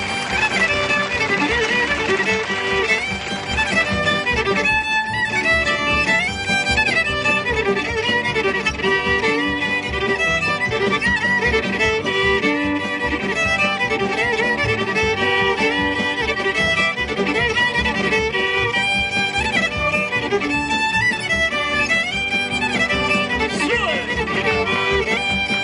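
Old-time country fiddle tune played on a violin, with guitar backing from the band.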